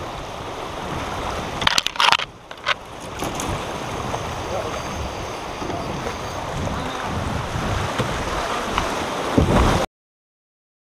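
Shallow river riffle rushing and splashing around a fishing kayak as it runs downstream, a steady rush of water. There are a few sharp knocks about two seconds in, and the sound cuts off suddenly near the end.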